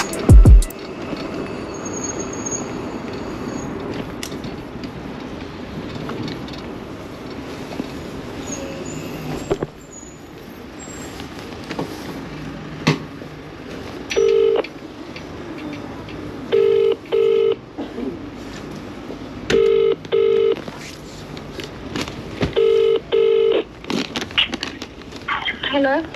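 UK phone ringback tone through a smartphone's loudspeaker while the call waits to be answered: the double ring, two short buzzes close together then a pause, repeating about every three seconds, four times in the second half. Before it, a steady background of street noise.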